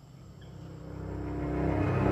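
A low, held orchestral chord from the TV episode's dramatic score, swelling steadily louder toward the end: a tension cue under a reveal.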